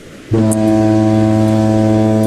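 A deep harbour foghorn sounds one long, steady, low blast starting about a third of a second in.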